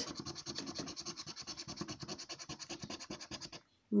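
A large coin rapidly scratching the latex coating off a lottery scratchcard in quick, even back-and-forth strokes. It stops abruptly about three and a half seconds in.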